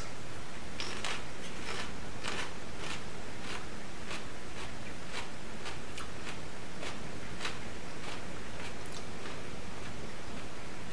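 Chewing a raw Aji Limon chile pepper with the mouth closed: irregular crisp crunches, about two or three a second, as the firm, crunchy flesh breaks up.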